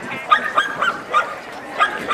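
Dog barking: about six short, high-pitched barks spread over two seconds.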